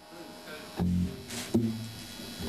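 Live rock band starting up: an electric bass guitar plays two short, loud low notes, with a short bright hit between them.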